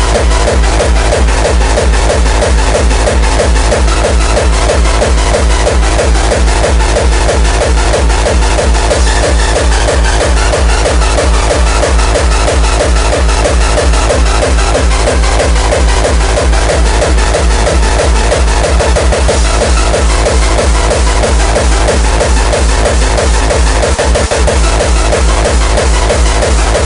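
Hardcore techno playing loud: a fast, steady kick drum under dense electronic synth layers, running without a break.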